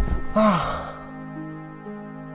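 A man's single anguished cry, a breathy vocal sound falling in pitch, about half a second in, the sound of him weeping in distress. Soft sustained background music holds underneath.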